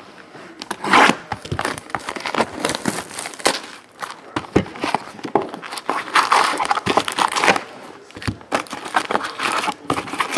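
A cardboard trading-card hobby box being handled and opened and its wrapped packs pulled out: irregular rustling and crinkling of cardboard and pack wrappers, with many small clicks and scrapes.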